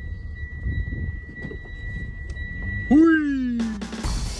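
A car's steady electronic warning beep sounds until about three seconds in. The engine is then started: it catches with a quick rev that falls back towards idle. The car has sat unused for about two months.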